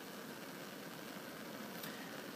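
Bunsen burner running on a roaring blue flame, a steady hiss of burning gas.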